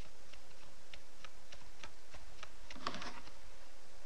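Light tapping footsteps, about three a second, as a cartoon child walks down stairs, with a brief louder scuffle a little before the end.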